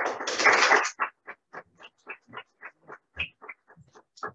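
Audience applause: a dense burst of clapping for about a second that thins to a few steady claps, about four a second, dying away near the end.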